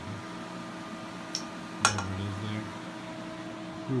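Shed space heater's fan running with a steady hum. A sharp click comes about two seconds in, with a fainter one just before it.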